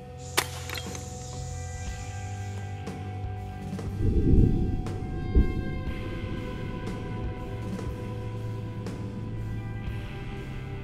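A single sharp crack about half a second in from a .25-calibre break-action Walther Falcon Hunter pellet rifle firing at a glass bottle of water, followed by background music with sustained tones. The loudest part is a deep, drum-like swell in the music about four seconds in, with another low hit a second later.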